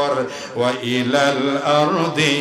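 A male preacher's voice chanting through a microphone and PA in long, held melodic tones, the sing-song recitation style of a Bangla waz sermon, with a short break about half a second in.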